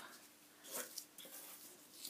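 Near silence: faint room tone, with one soft, brief rustle about three-quarters of a second in.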